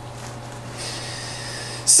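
A man breathing close to a microphone: a soft drawn-in breath from about the middle, ending in a quick sharp intake just before he speaks, over a steady low hum.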